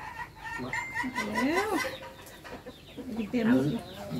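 Chickens clucking, with one long, steady call lasting about the first two seconds. People's voices are heard briefly.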